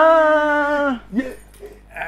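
A man's long drawn-out vocal cry, held on one pitch for about a second and falling away at the end, followed by a short rising call and softer voice sounds.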